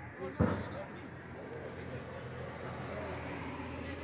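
Outdoor football-pitch ambience: faint distant voices over a steady low hum, with one sharp thump about half a second in.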